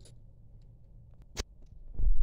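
Quiet, with a few faint ticks and one sharp click a little past halfway, as a brass water-heater pressure relief valve is turned snug by hand into its threaded tank fitting.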